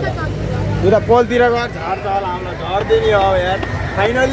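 Riders shouting and exclaiming 'oh' in excitement and fright inside a moving fairground ride cabin, over a steady low rumble.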